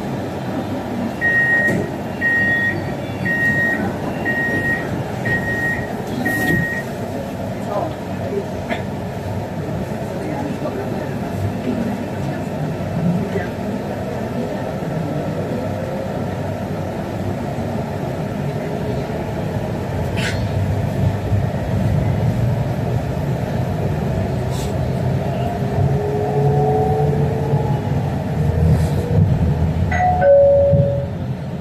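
Six short, high beeps about a second apart from an MRT train's door-closing warning, then the train pulling out of the station: a low rumble that grows louder, and a rising electric traction-motor whine near the end as it gathers speed.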